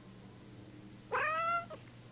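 A domestic cat meows once, a short call of about half a second starting about a second in, rising in pitch at its start.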